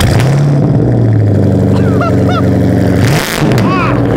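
Supercharged 2007 Mustang GT's 4.6-litre three-valve V8 running loudly just after start-up, settling into a steady idle, with the engine speed dipping and picking up again about three seconds in.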